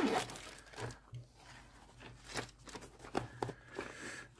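Handling noise: a small plastic bag crinkling, loudest in the first half second, then scattered light knocks and rustles as hands work in a nylon carry case.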